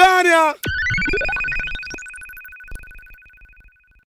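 A brief pitched voice, then a sharp click and an electronic ringing tone effect. Two held high tones have a sweep rising above them, and the effect fades away over about three seconds.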